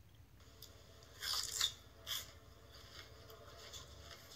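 Crunchy bites into a raw red bell pepper: a loud crunch about a second in, a second shorter crunch just after, then fainter chewing.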